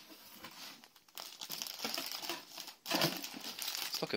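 Clear plastic bag around a plush toy crinkling and rustling as it is handled and lifted out of a cardboard box. It is faint for the first second, then busy from about a second in.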